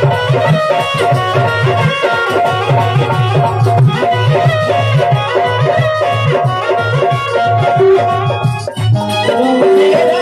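Instrumental interlude of live Indian folk music: an electronic keyboard plays a melody over hand-drum rhythm on tabla and dholak. The music dips briefly near the end, then a new phrase begins.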